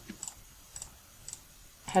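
Computer mouse clicking three times, faint and about half a second apart, while shift-click selecting several report labels.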